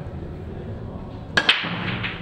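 Opening break in English eight-ball pool: about a second and a half in, two sharp cracks close together as the cue strikes the cue ball and the cue ball smashes into the racked reds and yellows, then the balls clatter apart across the table.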